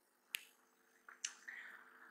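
Near silence broken by one short, sharp click about a third of a second in, then a couple of much fainter soft ticks a second or so later.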